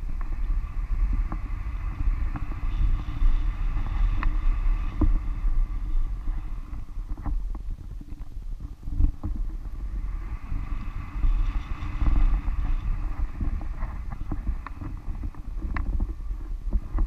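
Wind buffeting the camera's microphone during a tandem paraglider flight: a heavy, gusting low rumble with scattered pops. A higher rushing rises and fades twice.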